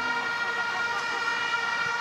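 Plastic stadium horns (vuvuzela-type) blown by the crowd, holding a steady drone of several notes at once.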